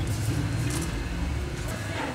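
A low, steady motor rumble that drops away near the end.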